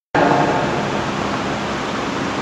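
Steady rushing background noise of the hall recording, with no clear source, cutting in suddenly just after the start from dead silence.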